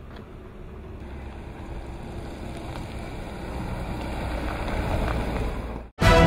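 A motor vehicle's engine rumbling, growing steadily louder, then cut off abruptly just before the end.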